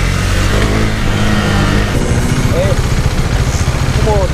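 Husqvarna Svartpilen 401's single-cylinder engine running as the bike rolls through traffic, settling into a slower, even pulsing at low revs in the second half as it comes to a stop, with wind noise on the microphone.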